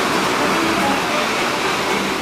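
Ocean surf rushing steadily, with faint music underneath.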